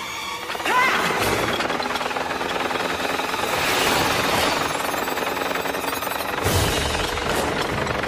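A swarm of robotic insects rushing along with a rapid, hammering clatter under dramatic orchestral music, with a short screech about a second in. A deeper rumble comes in near the end.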